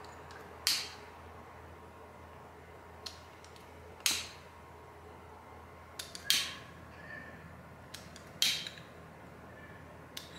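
Long-nosed utility lighter clicked about four times, a couple of seconds apart, with a few fainter ticks between, as it sparks to light jar candles.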